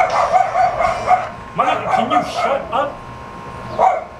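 A dog yipping and whining, with voices.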